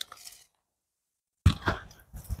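A brief faint click, then about a second of dead silence at an edit, then sound cutting back in suddenly with short fragments of a man's voice near the end.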